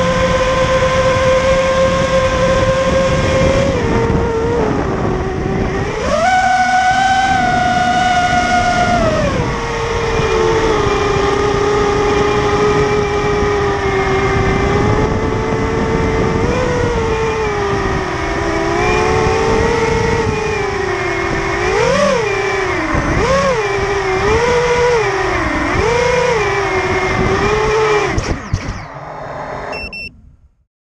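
Brushless motors and propellers of a 5-inch FPV racing quadcopter (BrotherHobby Returner R5 2306 2650kv motors on a 5S battery), heard through the onboard camera: a steady whine that jumps higher about six seconds in, falls back around ten seconds, then swings up and down in quick throttle sweeps before dying away near the end.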